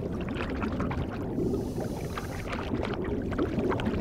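Scuba diver's exhaled air bubbling from the regulator underwater: a continuous crackling rush of bubbles, with a hiss in the middle.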